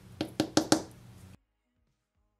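Four quick, sharp taps in under a second as small nail-art supplies are handled.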